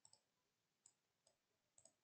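Near silence broken by a few faint computer mouse clicks, one of them a quick double click near the end.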